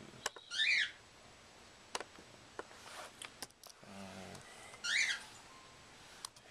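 Pet bird chirping twice, a short high call about half a second in and another about five seconds in, with a few faint sharp clicks in between.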